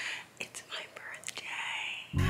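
A woman whispering close to the microphone, breathy and unvoiced, with a few small mouth clicks.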